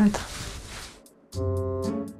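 Background music entering about a second in after a brief hush: sustained keyboard chords over a bass note, with light, regular percussive ticks.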